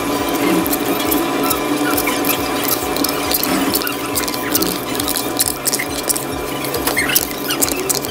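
Eating soft strawberry yogurt from a cup with a spoon: a steady run of quick wet clicks and smacks from the mouth and the spoon against the cup.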